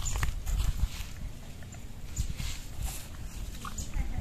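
A heifer in a difficult calving shifting about on dry ground and cut grass: irregular scuffs, rustles and thuds from her hooves, over a low rumble.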